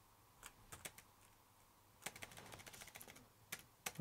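Faint keystrokes on a Dell laptop keyboard: a few scattered taps, then a quick run of typing about two seconds in, and a few more taps near the end.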